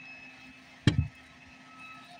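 A single short, sharp tap about a second in, over a faint steady hum.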